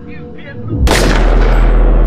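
Cinematic trailer impact: a sudden heavy boom just under a second in that rings out into a loud, sustained deep drone. Before it, an echoing voice fades out.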